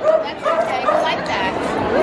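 A dog whining and yipping in short, repeated high calls, over the chatter of a crowd.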